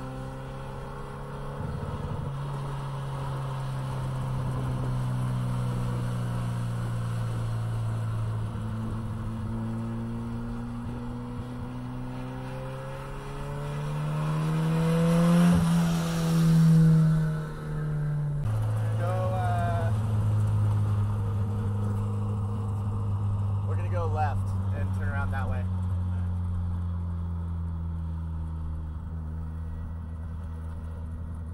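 The Bonneville Jetta's modified 2.0-litre turbocharged four-cylinder engine running at low road speed. Its note climbs slowly and grows louder to a peak as the car passes close by about halfway through, then drops in pitch a couple of seconds later.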